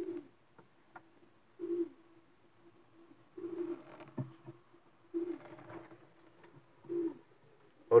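Racing pigeons cooing in a loft nest box: about five low coos, one every second and a half or so.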